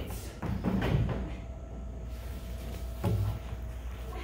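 Wooden stage trunk being handled: a few soft low thuds in the first second and a sharper knock about three seconds in, over a faint held tone.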